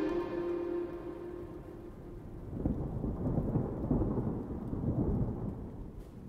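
A held music note dies away, then a low, noisy rumble swells about two and a half seconds in and fades out near the end.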